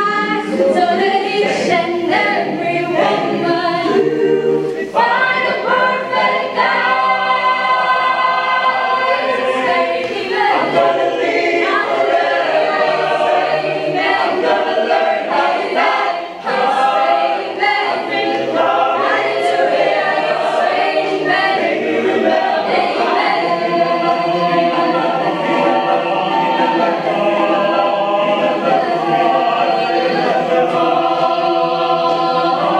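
Mixed-voice choir singing a cappella, full and continuous, with a brief dip in the sound about halfway through.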